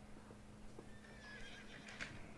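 Faint horse whinny in the background, its wavering call in the second half, over a steady low hum.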